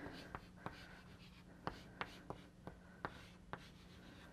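Chalk writing on a blackboard: a string of faint, sharp taps and short strokes, about eight in all, as letters are chalked up.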